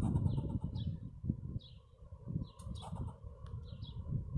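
Fox squirrel scolding with short, high chirping calls, several in a row at uneven spacing, in alarm at a person close by.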